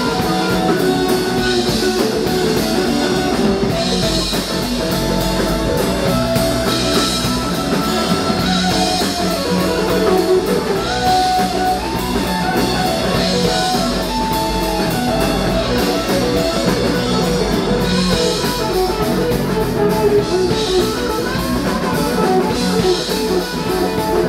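Live rock band playing at full volume: two electric guitars over bass guitar and a drum kit.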